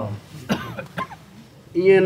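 A person coughing briefly in a pause between spoken phrases, with a small click about a second in.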